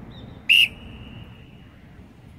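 A single sharp whistle blast about half a second in, its tone trailing on faintly for about a second. It is the start signal for a 75 m sprint, blown right after the "ready" call.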